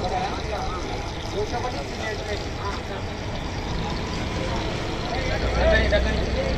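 Roadside street noise: a steady wash of passing traffic with faint background voices. A low rumble swells near the end.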